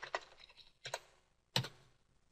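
Typing on a computer keyboard: a few separate keystrokes entering a short word, the loudest about one and a half seconds in.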